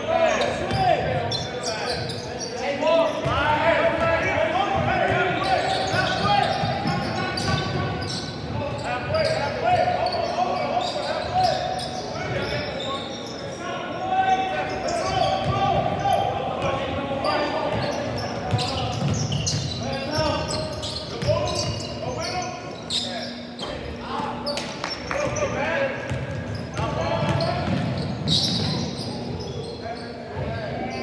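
Basketball game sounds in a large gym: a ball bouncing again and again on the hardwood court, mixed with players' and spectators' indistinct shouts and chatter, echoing in the hall.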